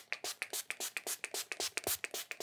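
Pump-action shimmer setting spray (MUA Light Luster Shimmer Spray) spritzed onto the face in a quick run of short hissing pumps, several a second.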